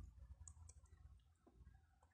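Near silence: faint low room hum with a few faint, short clicks.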